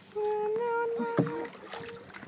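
A person humming one long steady note for about a second and a half, then a short one near the end, with a single sharp knock about a second in.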